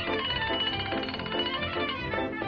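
Early-1930s cartoon soundtrack: an upbeat band score with plucked strings, its notes changing quickly.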